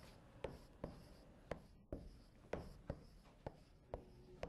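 Chalk writing on a blackboard: a faint series of short, sharp taps and scratches, about two a second.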